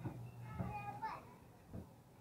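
Children's voices chattering and calling out in short, high-pitched bursts, mostly in the first half, over a steady low hum that stops about halfway through.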